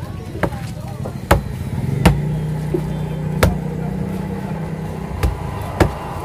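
A heavy cleaver chopping through yellowfin tuna onto a wooden stump chopping block: six sharp knocks at uneven intervals. A low steady engine drone runs under the middle of it.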